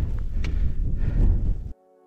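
Wind buffeting the microphone as a rough, low rumble, which cuts off suddenly near the end. Soft ambient music with sustained chords takes over.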